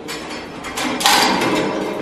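Metal clanking and scraping: a sharp clank about a second in, then about a second of rattling metal noise.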